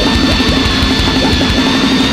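Grindcore played by a full band: distorted electric guitars and bass over dense, fast drumming, with a steady high-pitched tone held above the noise.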